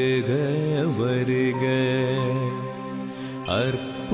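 Tamil devotional song or chant, sung with long held, melismatic notes over a steady accompaniment. It eases briefly about three seconds in and then resumes.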